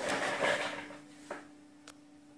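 Quiet handling noise: a soft rustle that fades away over the first second, a faint steady hum underneath, and two light clicks in the second half, the second sharper.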